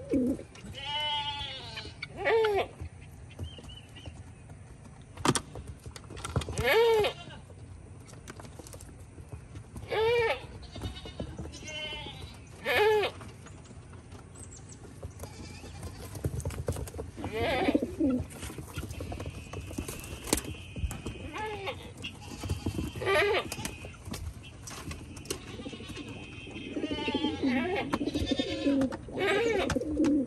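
Goats bleating repeatedly, a dozen or so wavering calls, some in quick pairs, over the light pecking clicks of pigeons eating seed.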